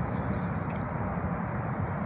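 Steady low rumble of distant highway traffic, with one faint click about two-thirds of a second in.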